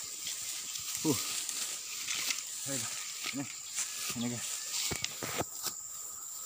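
A man's short breathy grunts and exclamations as he scrambles up a steep slope, over a steady high-pitched insect drone from the surrounding forest.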